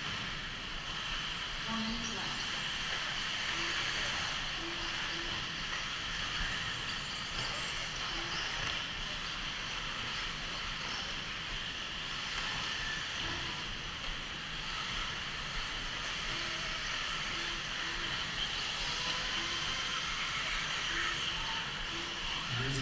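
Electric 1/8-scale RC buggies racing on an indoor dirt track, heard as a steady, even whir of motors and tyres with no single event standing out.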